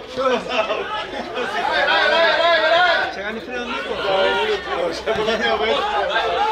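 Several men's voices shouting and calling at once, overlapping: footballers on the pitch during play.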